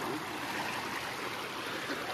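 Steady rush of shallow river water flowing over rocks.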